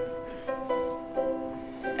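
Ukulele played on its own, softly: several chords struck in turn, each left to ring and fade.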